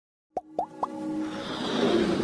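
Animated logo intro sting: three quick plop sounds, each sliding up in pitch, about a quarter second apart, then a musical swell that grows steadily louder.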